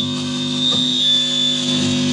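Electric guitar through an amplifier, a held chord ringing out steadily, with a thin steady high-pitched whine over it.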